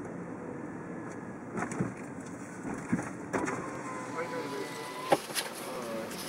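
Steady running noise inside a slow-moving car, broken by several sharp clicks and knocks, the loudest about five seconds in. A steady tone sounds for under two seconds shortly before that knock.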